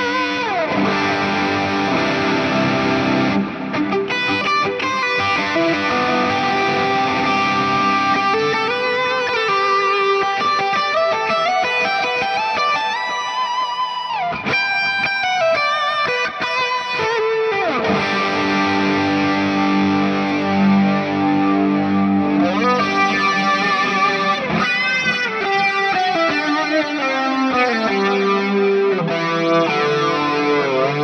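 Electric guitar, a Veritas Double Cut Portlander, played through a Hotone Ampero II Stage multi-effects unit on an ambient worship preset: a lightly overdriven tone with modulated delay, chorus and long reverb. The notes sustain and ring into each other, with several sliding notes along the way.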